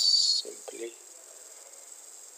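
The tail of a long, drawn-out hissing 's' in the narrator's voice, cutting off about half a second in. Then come a brief low murmur and quiet room noise.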